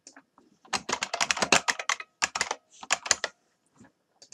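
Typing on a computer keyboard: a quick run of keystrokes starting under a second in, with a brief break midway.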